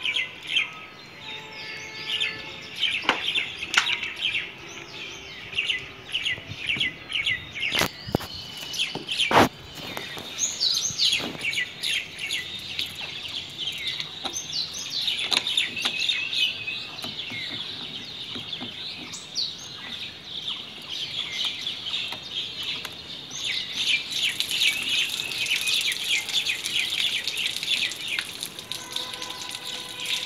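Many small birds chirping and calling in rapid short notes, thickest in the second half. Two sharp knocks a second and a half apart stand out just before halfway through.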